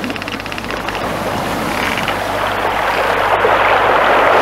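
Sound effects of a sailing ship at sea: a rapid run of ratchet-like mechanical clicks in the first second, then a rushing wash of waves and wind that swells louder toward the end.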